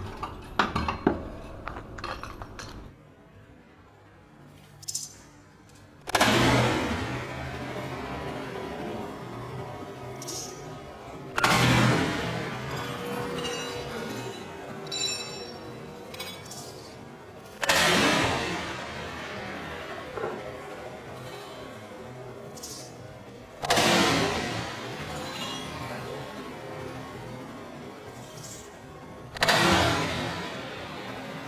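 Sledgehammer blows smashing a piano: five heavy strikes about six seconds apart, each leaving the piano's strings ringing and jangling as it fades, with small clinks of debris in between. Lighter knocking comes in the first few seconds.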